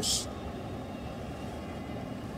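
A steady low background rumble with no distinct events, following the hiss of the last spoken word.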